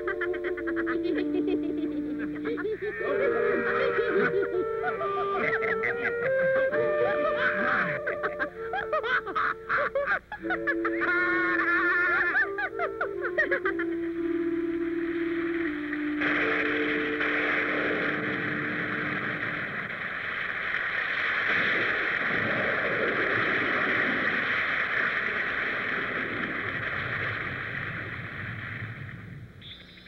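Cartoon score playing a stepped melody, then suddenly giving way about halfway in to the steady hiss of falling rain, which fades out near the end.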